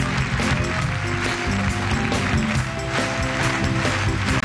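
Instrumental passage of a live band with no singing: fast, busy percussion from congas and drum kit over steady held chords.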